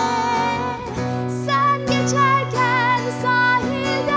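A woman singing with vibrato over a strummed acoustic guitar.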